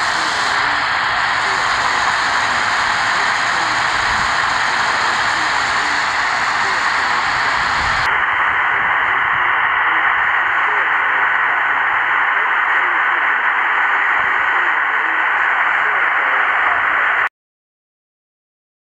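Portable shortwave receiver on 1843 kHz AM putting out steady hiss and static while listening for a low-power 160 m transmitter about 5 km away, with a faint steady whistle in the second half. The sound cuts off suddenly near the end.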